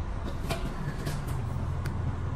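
Several sharp clicks and knocks as an electric scooter is handled and lowered to the floor, over a steady low hum.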